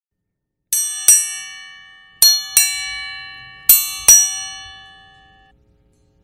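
A bell struck six times in three pairs, each pair two quick strokes, every stroke ringing on and fading slowly. The strokes come in the paired pattern of a ship's bell striking six bells.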